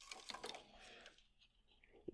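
Faint rustling with a few light clicks in about the first second, as tennis string is handled and drawn through the racket frame on a stringing machine.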